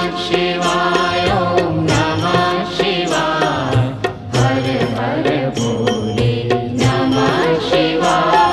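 Indian devotional music: a chanted vocal line over instrumental accompaniment with regular drum strokes.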